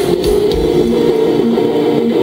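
Live rock band playing an instrumental passage: electric guitars and bass holding sustained chords with no singing, the drum hits thinning out about half a second in.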